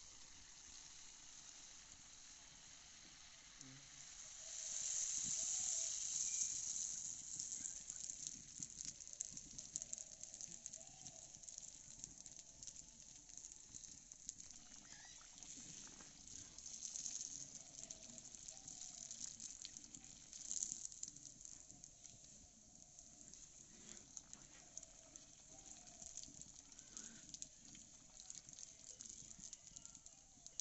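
Hot oil sizzling in an iron kadai as malpua batter deep-fries, with small pops and crackles throughout. The sizzle swells louder for a few seconds starting about four seconds in, then settles.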